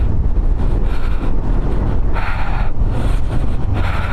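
Motorcycle being ridden: steady engine drone mixed with heavy wind rumble on the microphone.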